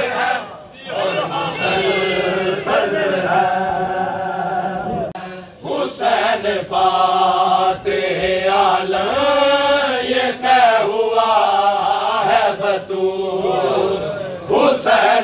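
Men chanting a nauha, a Shia mourning lament, in long drawn-out sung lines, pausing briefly twice for breath. Sharp hand strikes of matam (chest-beating) are heard now and then in the second half.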